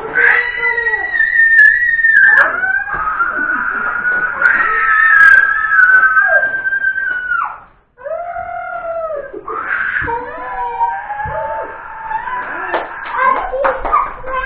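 Several people's voices holding long, high, wailing notes. There are two drawn-out notes in the first half, the second about four seconds long and sliding down at the end. After a brief cut-out, more wavering held notes follow.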